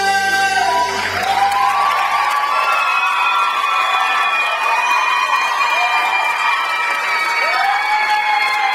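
A young male singer's held final note, with the band, ends about a second in. It gives way to an audience cheering and applauding, with high shouts that glide in pitch above the clapping.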